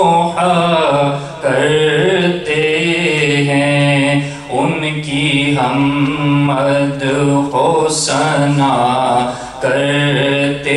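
A man's voice chanting a melodic religious recitation into a handheld microphone, drawn-out notes that bend up and down in pitch, with short breaks between phrases.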